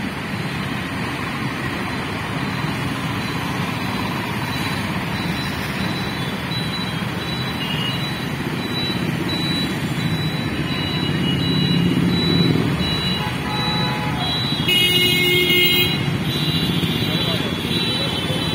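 Steady traffic at a busy road junction: car, auto-rickshaw and motorcycle engines and tyres passing. A vehicle horn sounds for about a second near the end.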